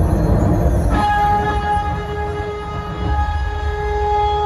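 Amplified dhumal band music through a large horn-loudspeaker rig. Dense drumming and bass give way about a second in to one steady held note with a horn-like tone, over a lighter low beat.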